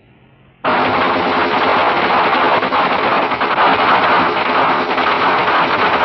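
Power tool cutting into a steel safe door, starting abruptly about half a second in and then running loud and steady with a fast rattling flutter.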